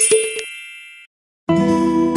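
A bright chime rings once and fades away over about a second, closing a short intro jingle. After a brief moment of dead silence, strummed acoustic guitar music starts.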